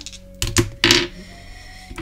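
Small hard dice clicking and clattering as they are rolled: a few quick clicks about half a second in, then a short clatter near one second.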